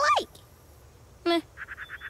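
Cartoon vocal noises and sound effects: a short pitched cry that rises and falls right at the start, a brief nasal honk a little past a second in, then a quick run of about six squeaky chirps that fades out.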